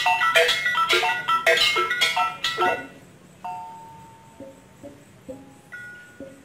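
Balinese gamelan of small bronze kettle gongs struck with mallets: a fast, dense run of ringing notes that breaks off about three seconds in, then a few sparse single strokes left ringing.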